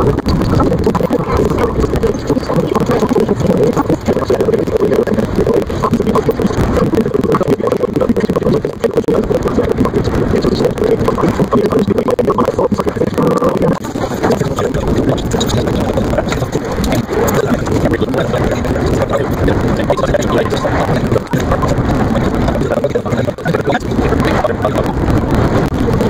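Steady engine and road rumble of a car being driven, heard from inside the cabin.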